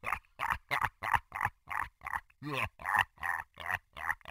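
A cartoon demon's evil laugh: a long, even run of short 'ha' syllables, about four a second.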